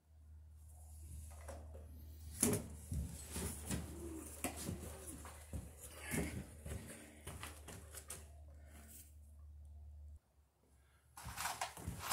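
Knocks, rustling and footsteps as a person gets up and moves about on a floor strewn with building debris, over a low steady hum that cuts off about ten seconds in.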